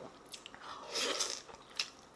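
A person biting and chewing a piece of tender, fatty slow-roasted pork shoulder: soft wet mouth sounds, loudest about a second in, with a few small clicks.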